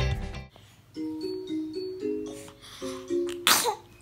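Strummed music fades out, then a children's song plays quietly from a TV, a simple melody moving in clear steps. About three and a half seconds in comes one short, loud, breathy burst, like a cough or sneeze.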